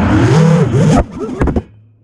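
FPV quadcopter's brushless motors and propellers revving up and down under a loud rush of air, cutting back sharply about a second in and fading away.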